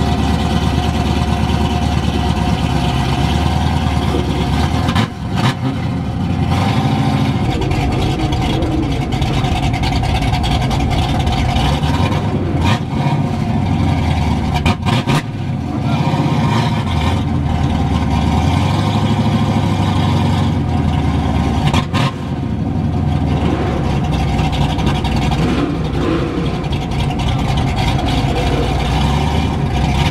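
V8 muscle-car engine and exhaust running loudly at low cruising speed, the note rising and falling several times as it pulls away and eases off, with a few short knocks.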